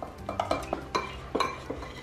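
Metal spoon stirring powdered sugar and milk in a glass bowl, clinking and scraping against the glass several times.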